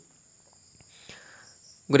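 A pause in a man's speech, holding only a faint, steady, high-pitched background drone and a brief faint hiss about a second in. His speech starts again at the very end.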